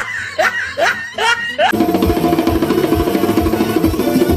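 A dubbed cartoon voice laughing in short rising notes, cut off less than two seconds in by music with a steady hand-drum beat.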